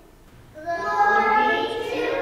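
A group of young children's voices in unison, singing a held note, coming in about half a second in after a brief quiet gap.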